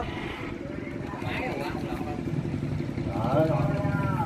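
A small engine running steadily with a rough low hum that grows a little louder about two seconds in. People's voices are heard over it near the end.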